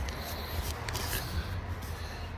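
Tape being peeled off a cardboard poster tube: a faint, crackly tearing with scattered small clicks over a low rumble.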